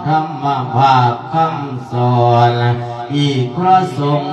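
A Buddhist monk chanting a sermon in the melodic Isan thet lae style, a man's voice holding long notes that bend and waver in pitch, with short breaks for breath.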